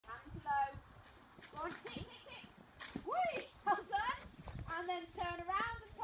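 Hoofbeats of a pony ridden away at pace, with a raised voice calling out several times over them.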